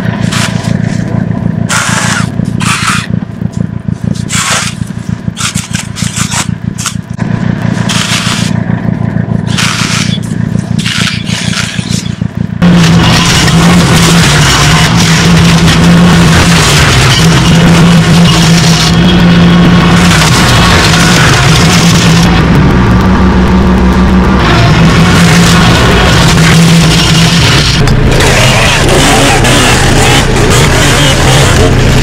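An engine runs steadily with repeated sharp cracks of brush being cut and broken. About twelve seconds in, a much louder gas chainsaw takes over, held at high revs with its pitch wavering as it cuts through branches and stems.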